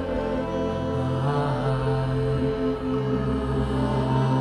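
Theremin music played live: sustained electronic notes held over a steady, layered drone.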